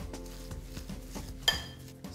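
Metal spoon working a minced-meat mixture in a ceramic bowl: soft scraping with small clicks, and one sharp ringing clink of the spoon against the bowl about one and a half seconds in.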